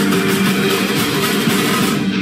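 Music with guitar playing steadily.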